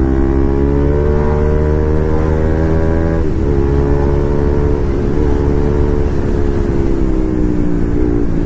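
Sport motorcycle engine running steadily under way, its pitch easing slowly down. About three seconds in it dips and breaks briefly as the throttle is rolled off and back on.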